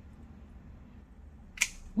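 A single sharp snip of hand pruning shears cutting through a thin olive tree stem, about one and a half seconds in.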